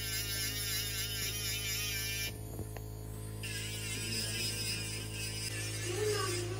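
Dental lab micromotor handpiece running as it trims the sides of a freshly milled, unsintered crown: a steady hum with a wavering whine over the first two seconds.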